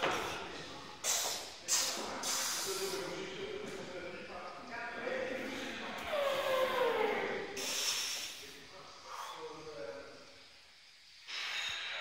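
Men's voices shouting and straining with effort during a heavy barbell back squat, with drawn-out cries that fall in pitch in the middle. Two sharp breaths about a second in.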